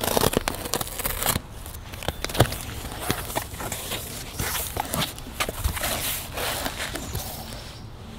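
A folding knife slitting the packing tape on a cardboard box, then the cardboard flaps being pulled open: scraping, tearing and rustling with scattered sharp clicks, busiest in the first second and a half.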